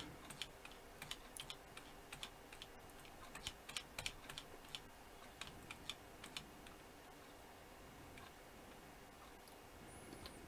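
Faint, irregular clicking of computer controls as a document is scrolled, the clicks mostly in the first six seconds or so, over low room tone.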